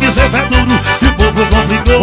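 Live forró band music: accordion leading over bass and percussion with a steady dance beat.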